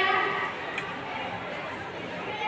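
Indistinct background chatter of voices in an echoing space, with one faint click a little under a second in.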